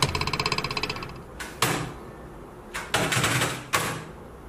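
A dog's paws clattering on a computer keyboard: a fast run of clicks for about a second, then several separate louder clacks.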